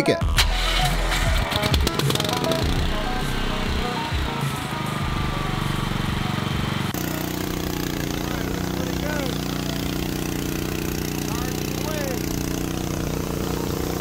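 Single-cylinder 400cc overhead-valve gasoline generator engine, mounted in the hatch of a Tesla Model S, running steadily at an even speed through its muffler after a few irregular seconds at the start. It is ridiculously loud.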